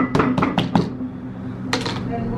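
A quick run of sharp knocks, about four in the first second and two more close together near the end, over a steady low hum.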